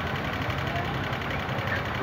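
Steady, even rumble of an idling vehicle engine mixed with street traffic noise, with no distinct knocks or other separate sounds.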